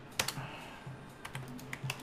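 Computer keyboard and mouse clicks: a single click about a fifth of a second in, then a few sharp clicks close together in the second half.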